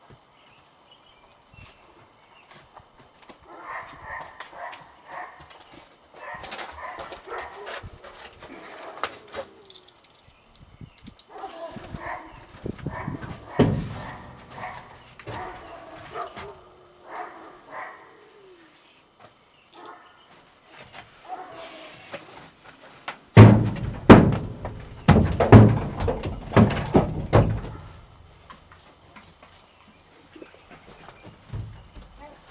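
A horse's hooves knocking and scuffing on a horse trailer's floor, with scattered steps at first. About two-thirds of the way through comes a run of loud, heavy hoof thuds.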